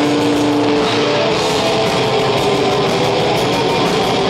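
A black metal band playing live at full volume: distorted electric guitars and bass holding sustained notes over fast, dense drumming.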